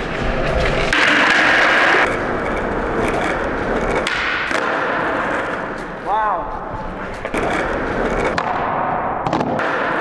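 Skateboard wheels rolling on a smooth concrete floor with a steady rumble, broken by several sharp clacks of the board hitting the ground during flatground trick attempts, mostly in the second half.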